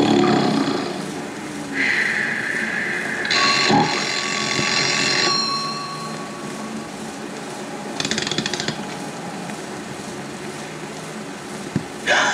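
Cartoon sound effects: two held whistling tones, the second higher and brighter, then about eight seconds in a brief rapid ringing of an alarm clock bell, the alarm that wakes the household.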